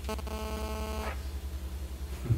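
Steady electrical mains hum in the recording, with a flat, steady tone over it for about the first second.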